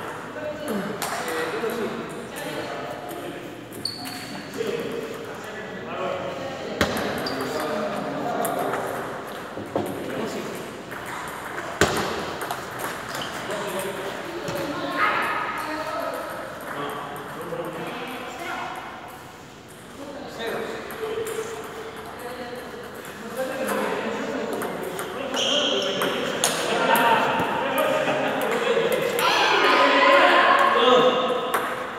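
Table tennis ball clicking off paddles and table a few times, over people talking in the background.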